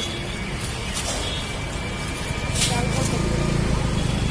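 Street ambience: background voices and the low engine rumble of passing traffic, which swells from about halfway through.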